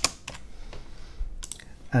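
Computer keyboard keystrokes: a sharp key click at the start, then a few fainter scattered clicks with quiet gaps between them.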